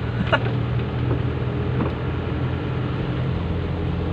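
Car engine running steadily with tyre noise on a wet road, heard from inside the cabin: an even low hum under a constant hiss.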